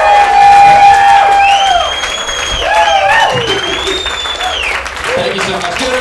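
Comedy-club audience applauding and cheering at the close of a set, with a long held shout in the first second or two and high drawn-out rising-and-falling calls after.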